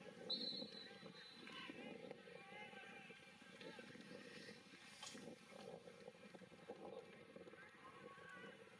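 Faint, distant voices of spectators over near-silent stadium ambience, with a short high tone about a third of a second in.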